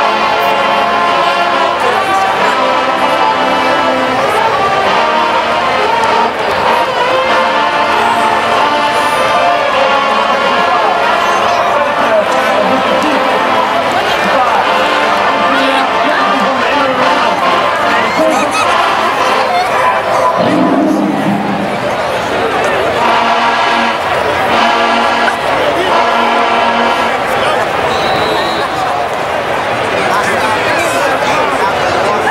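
Marching band brass section, trombones and sousaphones, playing loud held chords that change every second or so, with crowd noise from the stands underneath.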